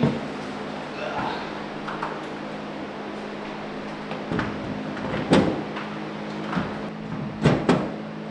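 GallowTech perforated metal wall panel knocking and clanking against its mounting rail as it is pushed and seated into place by hand: a few sharp knocks, the loudest about five seconds in and a quick pair near the end, over a steady low hum.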